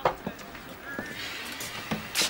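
Café background: a few sharp clinks and knocks, with faint indistinct voices behind them.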